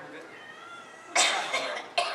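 Quiet talk, then a loud cough a little over a second in, with another cough starting right at the end.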